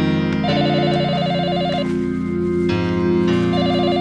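Electronic organ or synthesizer background music: sustained chords that shift every second or two, overlaid with a fast warbling two-note trill that comes in bursts about every three seconds.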